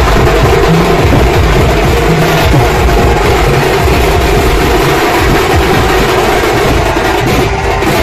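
Loud banjo party band music: an amplified melody blaring through large loudspeaker stacks, over a group of street drummers beating snare-style drums.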